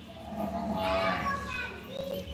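Children's voices in the background, talking and calling for about a second and a half, with no clear words.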